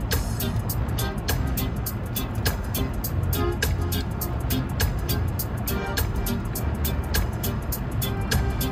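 A song with a steady drum beat playing over the car's audio system, with the low rumble of the car underneath.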